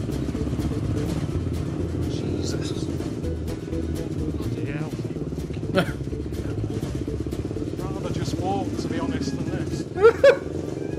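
A motorcycle engine running steadily as it carries riders through city streets, with music and short bits of voice over it. A brief sharp sound stands out about six seconds in.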